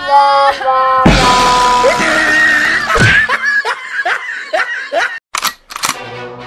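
A short comedic music sting, then a girl's loud drawn-out wail starting about a second in. It breaks into a run of short falling cries, about two a second, and cuts off near the end.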